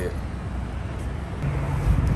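Low rumble of road traffic and vehicle engines, with a steady low hum joining about one and a half seconds in.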